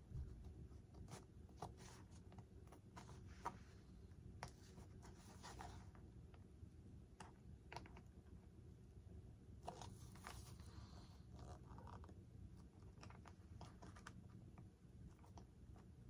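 Faint scratching and scattered light clicks from hand work with a small tool on a foam model-aircraft tail fin, close to near silence.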